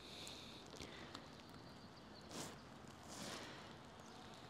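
Faint rustling close by: two soft rustles about two and three seconds in, with a few small clicks, from a photographer lying among plants and leaf litter while handling a camera.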